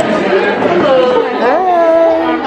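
People talking over each other in a busy room. A nearby voice comes in during the second half with a drawn-out, rising and falling call.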